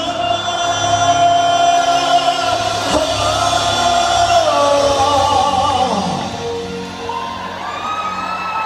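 Live pop band music in a large arena hall, with long held sung notes that slide in pitch, and shouts and whoops from the crowd.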